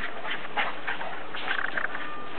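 Two dogs, a Bouvier des Flandres and a small dog, yapping in rough play: short yips, with a quick run of them about one and a half seconds in.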